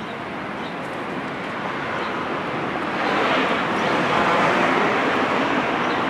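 Street traffic noise from a passing vehicle: a steady rushing that swells over the first three seconds and holds near its peak.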